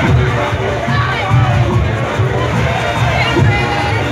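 A Junkanoo band playing, its drums beating in a fast, steady pulse with wavering higher-pitched horn or voice lines over it, under a crowd cheering and shouting.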